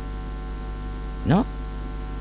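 Steady electrical mains hum at 50 Hz with its overtones, left bare in a pause of the speech, with one short rising spoken syllable about a second in.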